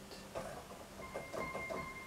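Digital keyboard played softly with a piano sound between sung lines: a few quiet notes start about half a second in, and higher notes ring on from about a second in.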